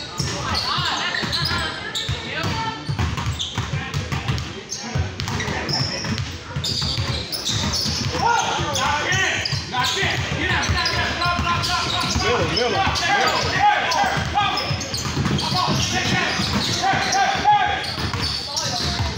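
Basketball bouncing on a hard gym court amid the chatter and shouts of players and spectators, in a large hall.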